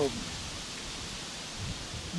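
Steady, even outdoor background hiss of a light wind at a pond's edge, with no distinct events.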